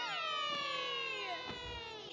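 Several children cheering a long, high "yay" from the animated show's soundtrack. It leaps up in pitch at the start, then falls slowly and fades out about a second and a half in.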